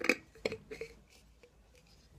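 Metal screw-top lid put on a glass jar and twisted shut: a sharp clink at the start, then a few softer clicks over the next second.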